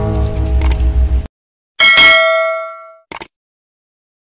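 An acoustic guitar chord rings and cuts off abruptly just over a second in. After a short silence comes a single bright bell-like ding, the loudest sound, ringing out for about a second, then a brief double click near the end, typical of a subscribe-button animation sound effect.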